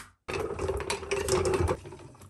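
Hand-cranked vertical sausage stuffer's gears rattling and grinding as the crank drives the piston down to push the meat into the stuffing tube. It starts about a quarter second in and stops near the end.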